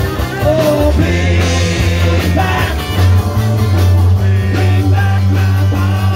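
Live rock and roll band playing loudly with a singer, heard from among the crowd: steady bass notes under a sung melody.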